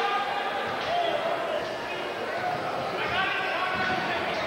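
A basketball being dribbled on a hardwood gym floor, with voices from players and spectators in the gym.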